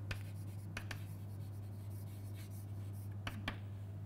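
Chalk writing on a blackboard: a few short, sharp taps and scratches of chalk strokes, spread over the seconds, with a steady low hum underneath.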